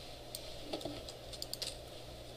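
A few scattered light clicks from a computer keyboard and mouse being worked, over a steady low hum.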